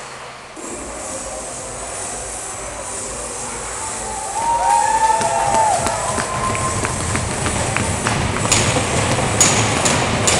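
Loud, echoing ice-arena din during a skating routine: a steady rumble that grows louder about four seconds in, with a few gliding pitched tones in the middle and several sharp clicks near the end.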